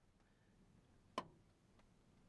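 Near silence, broken by a single sharp click about a second in and a much fainter tick shortly after.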